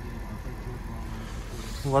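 2018 Honda Accord's engine idling, a steady low hum.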